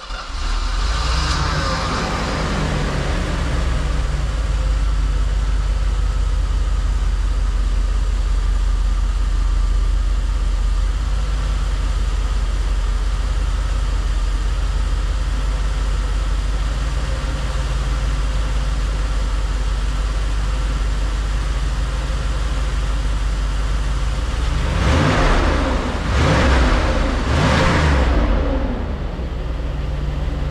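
Mercedes 560 SL V8 running at idle from a cold start, heard from behind at the exhaust. Near the end the throttle is blipped three times, the pitch rising and falling with each rev before it settles back to idle.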